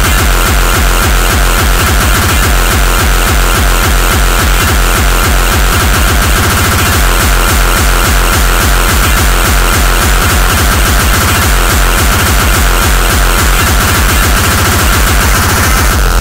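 Loud, fast electronic dance music: a steady, rapid pounding kick drum under a held high synth note, with no vocals.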